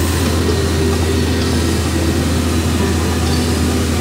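Iveco truck's diesel engine running steadily under way, heard from inside the cab as a constant low hum with road noise.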